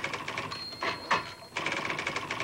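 Electric typewriter typing fast: a rapid run of keystrokes, then a steady high whine with two heavy clacks about a quarter second apart, then another rapid run of keystrokes.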